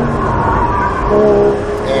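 Porsche 718 Cayman GTS engine and road noise heard inside the cabin as the car brakes hard for a corner. About halfway through, the engine settles into a steady, even note.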